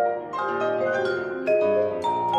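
Vibraphone and grand piano playing together: a quick run of struck vibraphone notes ringing into one another, with low piano notes underneath.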